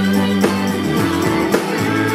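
Live rock band playing: a woman singing over electric guitar, bass guitar and drums, with a steady drum beat of about two hits a second.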